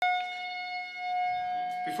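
A steady, high-pitched tone from the stage amplification, held unchanging with a stack of overtones, of the kind a live band's guitar amp or PA gives off between songs. A man starts speaking into the microphone near the end.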